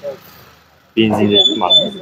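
Speech: a person talking briefly about a second in, with a thin, steady high tone sounding over the second half of it.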